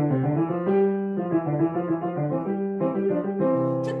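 Yamaha grand piano played with both hands at a brisk pace, with notes changing several times a second over a steady low register: a short finger-technique exercise played up to speed.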